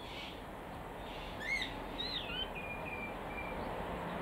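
A few faint, short bird chirps over a steady background hiss: one about one and a half seconds in, a falling one about two seconds in, then a few soft short notes.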